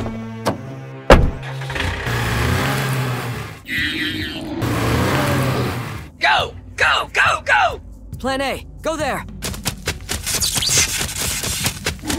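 Dubbed sound effects: a sharp thud about a second in, then a steady car-engine rumble for a few seconds, then a quick run of about seven short high creature calls, each rising then falling, over background music.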